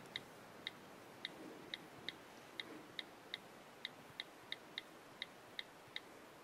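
iPad on-screen keyboard key clicks, one short faint click for each letter as a phrase is typed, about sixteen in all at an uneven two to three a second.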